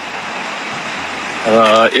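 Steady rushing outdoor background noise with no distinct tone, picked up by a phone's microphone. A man starts speaking about one and a half seconds in.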